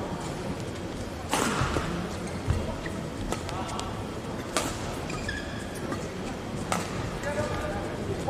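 Badminton rally in a sports hall: sharp racket strikes on the shuttlecock every second or two, the loudest about a second in, and court shoes squeaking on the court mat between hits, over a murmur of voices in the hall.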